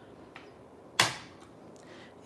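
A single sharp tap of hard plastic on a glass craft mat about a second in, fading quickly, against quiet room tone.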